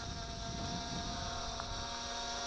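MJX Bugs 2W quadcopter's brushless motors and propellers running in a steady hum, with a thin steady whine, as it hovers low after return-to-home.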